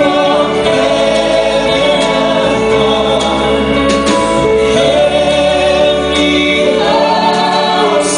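Live amplified singing of a Christmas carol: a woman's lead voice over harmony from the other singers, with instrumental accompaniment, heard through a theatre PA.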